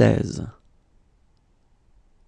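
A voice finishing the French number "quatre-vingt-seize", ending about half a second in, followed by faint room tone.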